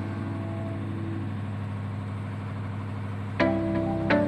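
Background music from a pop song, paused between sung lines. Its held chords fade out, then a new chord is struck sharply about three and a half seconds in, over a steady low hum.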